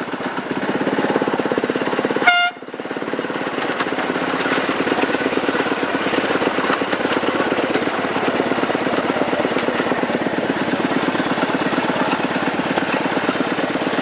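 Terrier locomotive of a miniature ride-on railway running along the track with a fast, even beat, giving one short toot about two seconds in.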